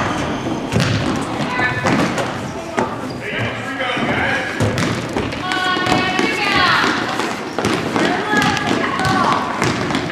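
A basketball bouncing and sneakers thudding on a hardwood gym floor as players run and dribble up the court, repeated thuds throughout, with spectators' and players' voices in the gymnasium.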